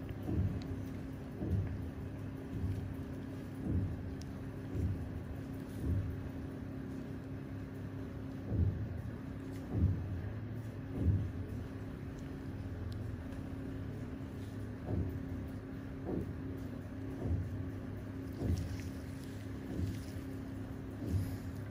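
A steady low droning hum with a soft low pulse about once a second.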